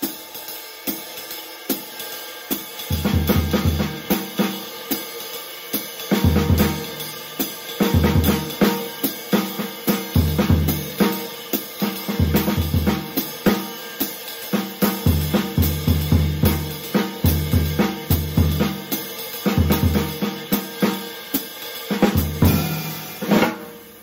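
Jazz swing played on a drum kit: the ride cymbal keeps the spang-a-lang triplet time and the hi-hat closes on two and four, while the snare and bass drum trade improvised triplet phrases with gaps between them. The bass drum and snare phrases come in about three seconds in, over cymbal time alone.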